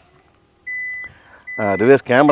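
Electronic beep: a steady high tone held about half a second, then a second, fainter one of the same pitch.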